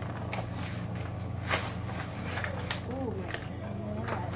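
Cardboard-and-plastic blister packs of toy die-cast cars being handled and pried open: a few sharp crinkles and clicks of the packaging.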